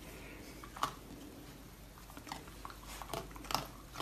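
A raccoon chewing and nibbling at something held in its paws, heard as scattered small clicks and crunches.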